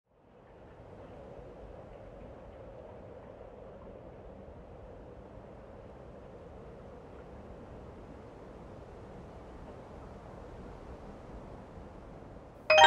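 Faint, steady background noise that fades in over the first second: an even rumble and hiss with no tones or rhythm, and no music yet.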